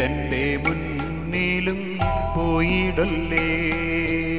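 Malayalam stage-drama song (natakaganam) playing: sustained melodic lines over a steady bass and regular percussion strikes, about three a second.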